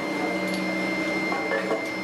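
Steady drone of foundry machinery with a constant thin high whine over a low hum, and faint voices in the background.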